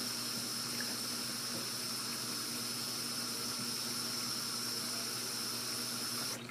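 Bathroom sink faucet running steadily, a stream of water pouring into the basin.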